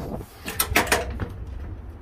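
A few quick knocks close together, about half a second to a second in, over a low rumble.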